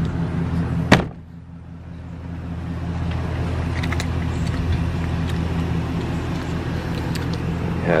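A vehicle door shut with a single sharp thud about a second in, over a vehicle engine idling with a steady low hum.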